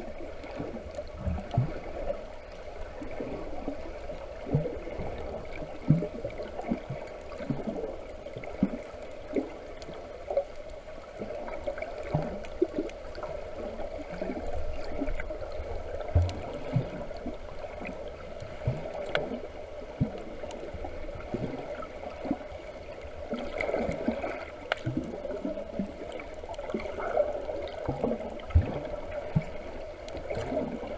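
Muffled water sound picked up by a camera held underwater: a steady low wash with irregular bubbling pops and knocks.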